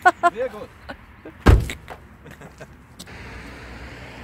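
A car door shutting with a single heavy slam about a second and a half in, followed by a smaller latch click near the end.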